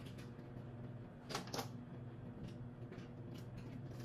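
Quiet kitchen sounds: a low steady hum with two light clicks close together a little over a second in.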